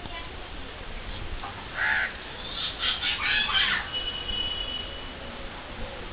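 Birds calling outdoors: a harsh call about two seconds in, a quick run of calls around three seconds in, then a thin, steady whistle.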